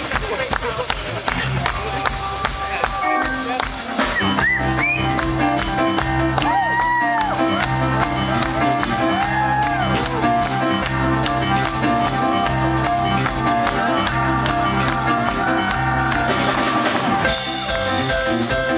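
Live jazz-funk band playing: electric bass, drum kit and keyboards. The texture is thinner at first, then the full groove with a steady bass line and drums comes in about four seconds in, with a few sliding high notes above it.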